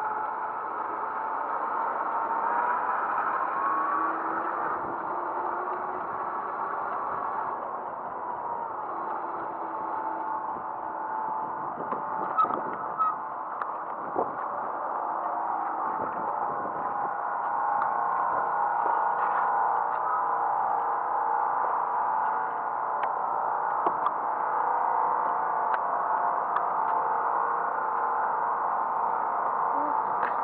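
Ride noise from a small motorized scooter: a steady whine with several pitches over tyre and road noise, and a few sharp clicks about twelve to fourteen seconds in.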